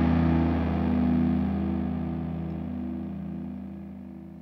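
Background music with guitar, fading out steadily.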